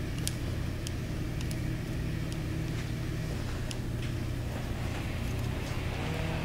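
A steady low hum runs throughout, with a few faint small clicks over it.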